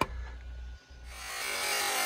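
A click, then about a second in the electric motor and drivetrain of a Radio Shack 4X4 Off Roader RC truck start whirring as it drives on concrete, growing louder.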